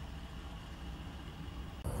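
A car engine idling, a low steady hum heard from inside the cabin. Near the end it cuts abruptly to a different, hissier background.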